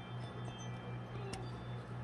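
Quiet room tone: a steady low hum, with one faint click a little past halfway, from the small craft pieces and glue bottle being handled.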